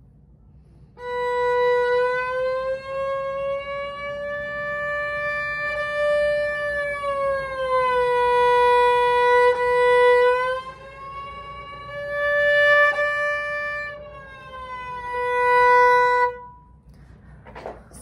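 A violin playing one sustained bowed note while the first finger slides along the A string, from B in first position up to D in third position and back. The pitch glides up slowly, falls back, holds, then rises and falls once more, with steady held notes between the slides.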